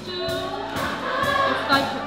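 A stage chorus singing a gospel-style musical number together, with live band accompaniment and a steady drum beat.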